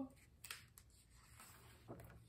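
Faint rustle and soft ticks of a hardcover picture book's page being turned by hand, with near silence around them.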